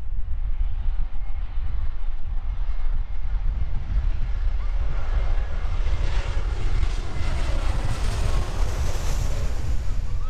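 Jet airliner passing low overhead, its engine noise swelling from about four seconds in to its loudest near the end, over a steady low rumble of wind on the microphone.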